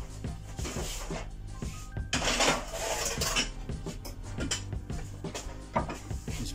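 A glass dish and kitchenware being handled on a wooden board: scattered clinks and knocks, with two longer scraping noises about two and three seconds in, over steady background music.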